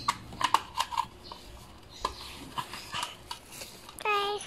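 Small plastic clicks and taps as a battery is pressed into the battery compartment of an exercise bike's plastic display console, several quick clicks in the first second and a few more scattered after.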